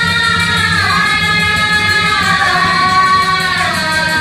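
A woman singing Assamese Nagara Naam devotional song through a PA system, with long held notes that slide downward, over a steady low instrumental drone.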